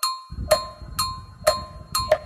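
Instrumental interlude of a karaoke backing track: a bell-like percussion part struck in a steady rhythm about twice a second, each strike ringing briefly, with a low bass coming in just after the start.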